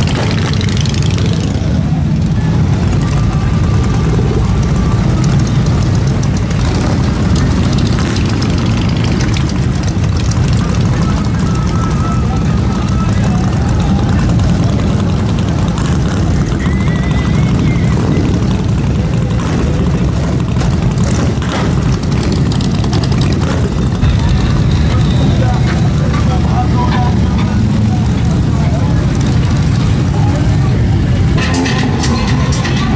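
Steady low rumble of motorcycle engines idling and rolling slowly past, continuous throughout, with people's voices faintly over it.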